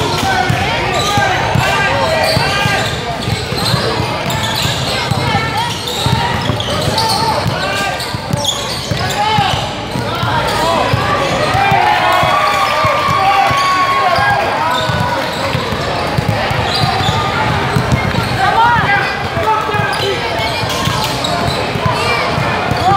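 Basketball game in a gym: a ball bouncing on a hardwood floor and players moving on the court, under steady chatter and calls from spectators and players, echoing in the hall.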